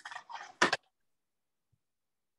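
A person's short breathy noises in the first second, the last one sharper, heard over a video call.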